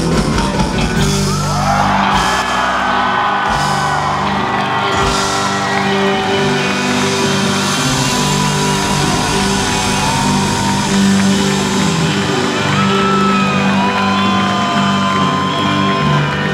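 Live rock band playing, with electric guitar and drums, loud and continuous.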